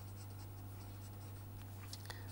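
Marker pen writing on paper: faint, quick scratching strokes, over a steady low hum.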